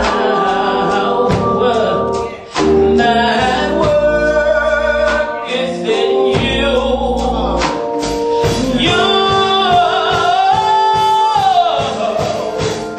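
Gospel song with a woman singing lead into a handheld microphone, her melody bending and holding notes over instrumental accompaniment with deep bass notes.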